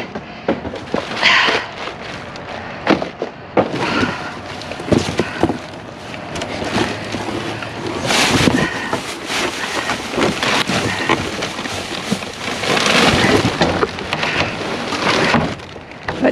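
Plastic bags, snack packets and cardboard boxes rustling and crinkling as they are rummaged through and pulled from a dumpster, with occasional knocks. The crinkling grows louder in two stretches, around the middle and again near the end.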